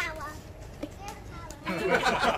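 Children playing and calling out. A high-pitched child's voice rises and falls at the start, and near the end several children talk and shout over one another, louder.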